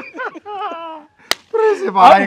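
Two men laughing, broken by a single sharp smack a little over a second in.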